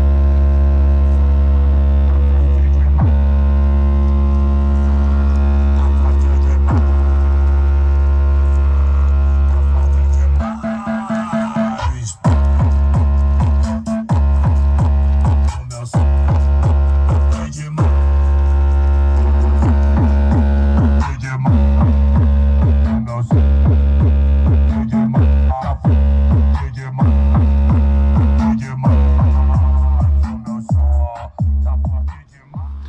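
Bass-heavy music played loud through a car-audio speaker box with a 15-inch 1100 W RMS woofer and horn tweeters, its bass strong. For about the first ten seconds a long deep bass note is held; after that the music turns into a pulsing beat with short breaks.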